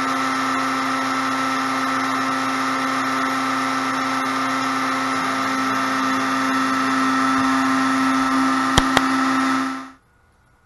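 Compact DeWalt trim router running at full speed as the spindle of an OpenBuilds LEAD 1010 CNC machine, a steady high motor whine with hiss, while the gantry moves it over the work. Two sharp clicks come near the end, just before the sound cuts off.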